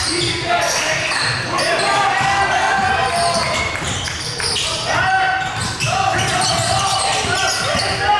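Basketball being dribbled on a hardwood gym floor, with repeated short bounces, under players and spectators calling out, echoing in a large gymnasium.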